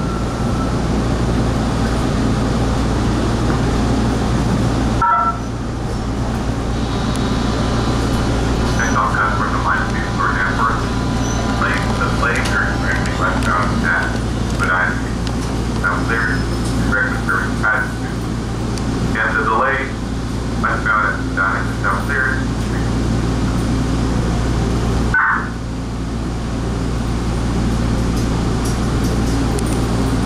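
Bombardier T1 subway car running through a tunnel, heard from inside the car: a steady low rumble and hum from its motors and wheels. Passengers' voices can be heard over it from about nine seconds in until a little after twenty seconds.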